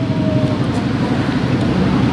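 Steady low rumble of road traffic and running engines.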